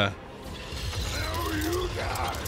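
Busy mechanical clattering and ratcheting from a TV episode's soundtrack, with a faint voice under it past the middle.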